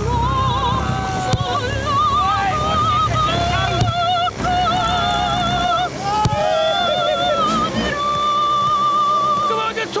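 Music: a voice singing in an operatic style, a run of long held notes with a wide vibrato, ending on one long steady high note.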